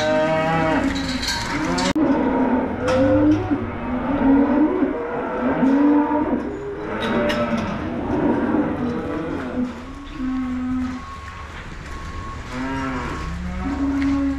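Holstein dairy cows mooing, many calls overlapping one after another, thinning to a few separate moos in the last seconds.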